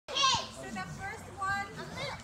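Young children's voices: a brief, loud, high-pitched child's cry at the very start, then children chattering and calling out.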